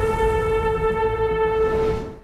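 A loud, steady horn-like blast in a trailer soundtrack: one held, deep chord over a low rumble. It fades out right at the end.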